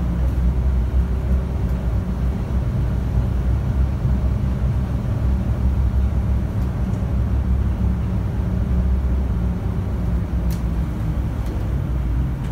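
Volvo city bus running under way, heard from inside the cabin: a steady low engine and drivetrain hum over road noise. A faint click comes about ten and a half seconds in.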